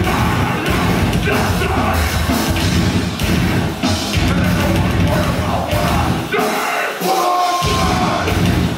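Heavy metal band playing live at full volume: distorted guitars, bass, pounding drums and screamed vocals. About three-quarters of the way through, the drums and low end drop out briefly and a high held tone rings over the gap before the full band crashes back in.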